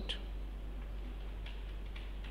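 A few faint taps of a pen stylus on a tablet as figures are written, over a steady low hum.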